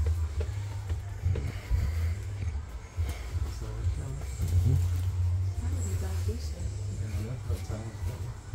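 Indistinct voices and background music in a busy shop, over a steady low rumble.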